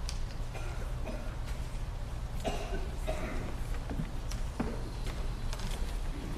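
Footsteps, scattered knocks and rustling as a robed children's choir starts stepping down off the chancel risers, with a few faint murmurs, over a steady low hum in the sanctuary.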